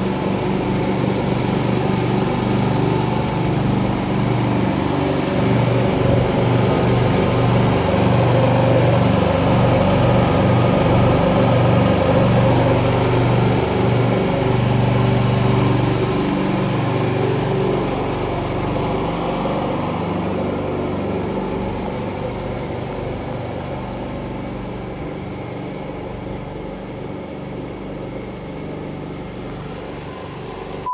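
Predator 9500 inverter generator engine running at a steady speed. It is loud through the first half and slowly grows quieter from about halfway on.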